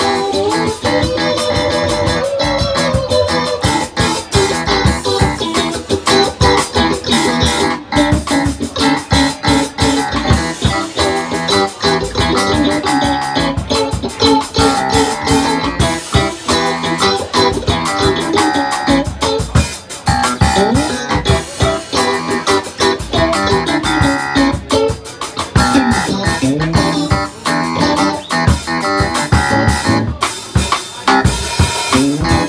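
Instrumental break in a live blues-soul band: a Stratocaster-style electric guitar takes the lead with bending single-note lines, backed by electric keyboard and a drum kit keeping a steady groove.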